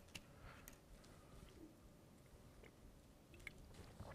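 Near silence in a quiet room, with faint scattered ticks and scratches of pens writing on paper.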